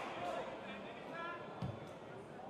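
Faint football-stadium background with distant voices, and a single dull thump about one and a half seconds in.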